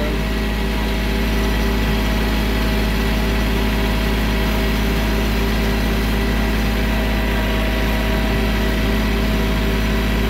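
Compact tractor's diesel engine running steadily as it drives, heard close up from the operator's seat.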